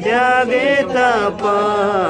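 Singing of a Nepali Christian hymn. The notes are held and slide up and down in pitch, and a new phrase begins about one and a half seconds in.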